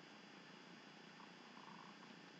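Near silence: faint room tone in a pause of the narration.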